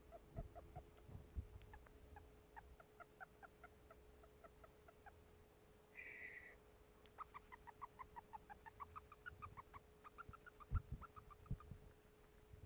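Syrian hamster giving faint, quick squeaks in time with her sniffing, about five a second, in runs that rise and fall in pitch, with a short pause a little past the middle. A very unusual sniff: the owner found no injury, and her breathing seemed fine.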